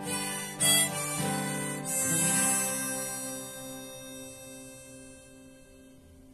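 Harmonica and strummed steel-string acoustic guitar playing the closing bars of a song; a last chord about two seconds in rings out and fades away.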